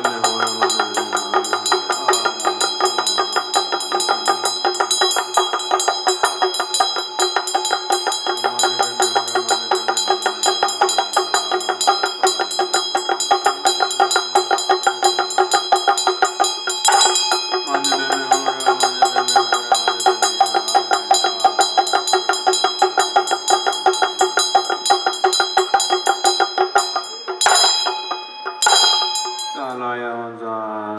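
Tibetan ritual hand drum (damaru) rattled rapidly, its beads striking many times a second, over a Tibetan ritual bell ringing steadily. A few louder strikes come near the end.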